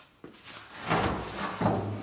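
Dry rubbing and scraping handling noise, with a light click near the start, swelling through the middle and easing off.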